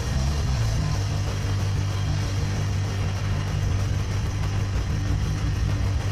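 Live rock band playing an instrumental stretch: electric guitars, bass guitar and drums, with a heavy, steady low end and no singing.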